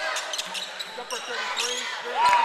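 Basketball bouncing on a hardwood court, several sharp strikes that echo in a large gym, with voices in the background.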